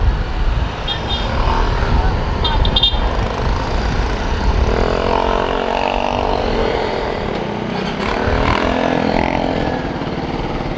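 Motorcycle riding at road speed: engine running under heavy wind rumble on the camera's microphone. About halfway through, a clearer engine note comes in for a few seconds.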